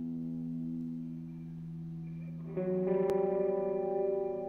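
Electric guitar through effects and reverb holding sustained chords, moving to a fuller, louder chord about two and a half seconds in. A single sharp click sounds shortly after the chord change.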